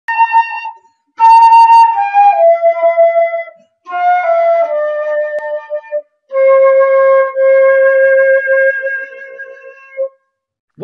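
Transverse flute playing short phrases of stepwise descending notes, separated by brief pauses, ending on a long held note.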